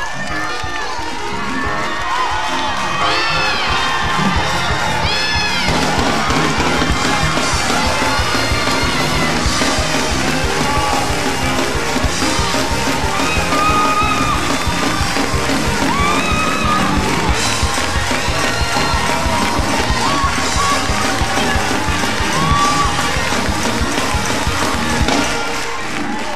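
Church congregation shouting and cheering over loud praise music, with high whoops rising and falling above the din. A fast, driving beat comes in about six seconds in.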